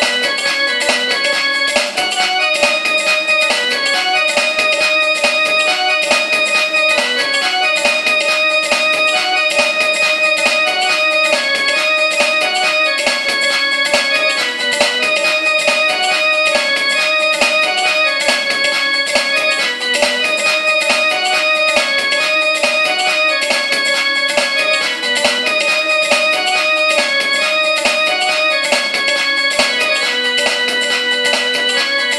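Electronic keyboard played as a piano cover, a fast melody of quick, closely spaced notes with no low bass notes.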